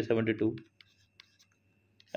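A few faint taps and scratches of writing on a touchscreen, after a man's voice stops about half a second in.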